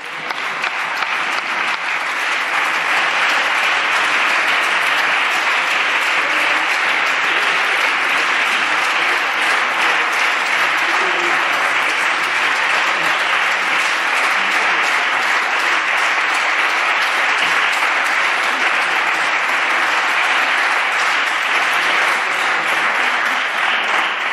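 Parliamentary deputies applauding in a large debating chamber: sustained clapping that builds over the first couple of seconds, then holds steady for about twenty seconds.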